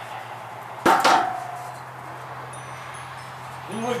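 A single sharp metal clank about a second in, with a short ringing tone that dies away, as the metal satellite dish and its mounting arm are handled. After it, wind chimes tinkle softly with thin high notes.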